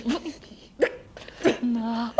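A woman's voice performing Futurist sound poetry in wordless, hiccup-like vocal sounds. There is a short pitched yelp at the start, two sharp catches of the breath a little under a second apart, then a held low hummed note near the end.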